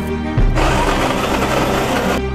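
Coffee beans pouring into an electric grinder's plastic hopper: a dense, grainy rattle that starts about half a second in and cuts off at the end, over background music.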